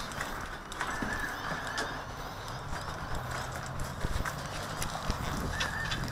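Irregular knocks and clicks from a small action camera being handled and moved about, heard through its own microphone, over a steady background with a faint high whine coming and going.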